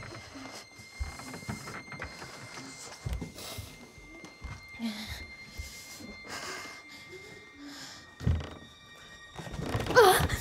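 Horror film soundtrack: sustained eerie score tones under a woman's ragged breathing and whimpers, with a few low thuds, the loudest about eight seconds in.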